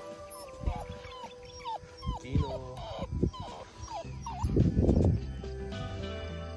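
Siberian husky whining in a series of short, falling cries, ending in a louder call about five seconds in, over background music.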